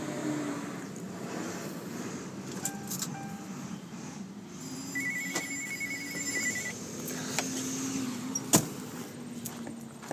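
A Ford sedan's electronic warning chime beeping rapidly for under two seconds about halfway through, over a steady low hum. A single sharp knock near the end is the loudest sound.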